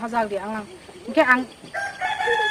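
A rooster starts crowing near the end, one long, steady crow.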